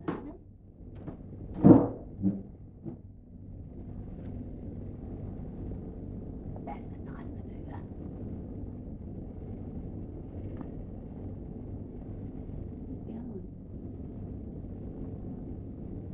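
Steady low rumble of a hovering Black Hawk helicopter, muffled through office window glass. There is a sharp knock about two seconds in.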